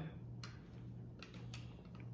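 Faint clicks of a spring-loaded batter scoop's release lever and the scoop against a paper cupcake liner, over a low steady hum. One sharper click comes about half a second in, then a few fainter ticks.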